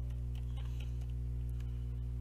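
Steady electrical hum on the microphone line, with a few faint clicks of computer keys as a file name is typed.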